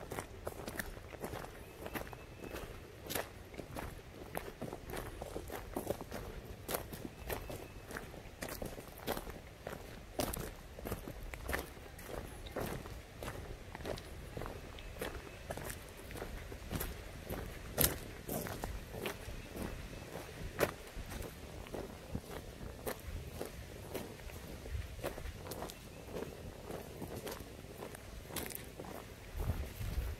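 Footsteps on a gravel path at a steady walking pace, with a couple of sharper steps past the middle.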